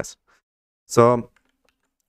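A single spoken word about a second in. Otherwise near quiet, with a few faint clicks of computer keyboard or mouse use.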